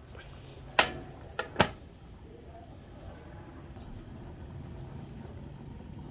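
Aluminium pot lid being put on a cooking pot: a sharp metal clank about a second in, then two lighter clinks close together, over a faint steady low background noise.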